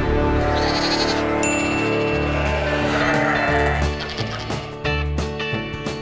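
Goat bleating over music with a steady bass line.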